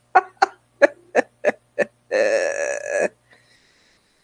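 A woman laughing in a run of short bursts, then a single pitched, wavering vocal sound about a second long.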